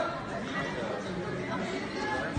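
Many people talking at once in a large, echoing sports hall: spectators' chatter, with one voice rising as it calls out at the very start.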